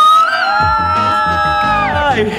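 Voices shouting one long, high-pitched cheer that rises, holds for most of two seconds, then drops off near the end, over background music with a steady beat.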